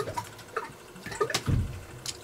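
Liquid disinfectant being applied to a scraped shin: light watery splashing with scattered small clicks, and a low thump about one and a half seconds in.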